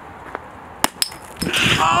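Metal cap levered off a glass beer bottle with a lighter: two sharp clicks about a fifth of a second apart, a little past the middle.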